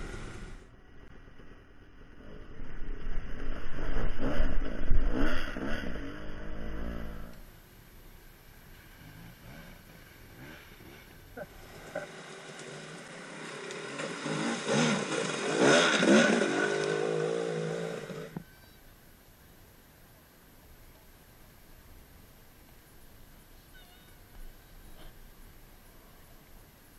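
Dirt bike engines revving in bursts, loudest a few seconds in and again from about twelve to eighteen seconds, cutting off suddenly after that and leaving only a faint background.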